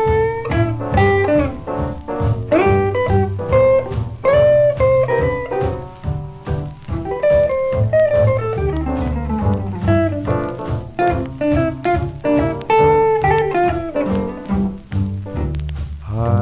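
Instrumental break in a 1940s small-combo swing jazz recording: a guitar solo of quick single-note runs over a plucked double bass. One long descending run comes about halfway through.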